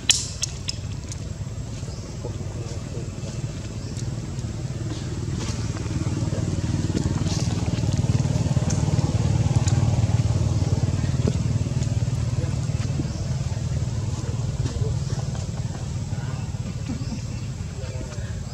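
A motor vehicle's engine passing: a low drone that builds to its loudest about halfway through, then fades.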